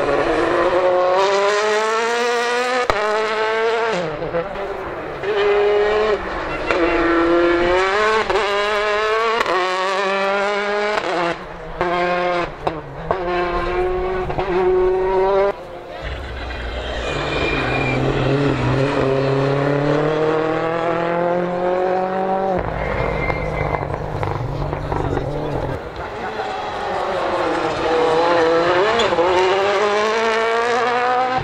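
Turbocharged World Rally Cars, a Hyundai i20 Coupe WRC and then a Citroën C3 WRC, accelerating hard on a tarmac stage. The engine note climbs and snaps back with each quick upshift, over and over. One car passes with a slower rising note about halfway through, and another accelerates near the end.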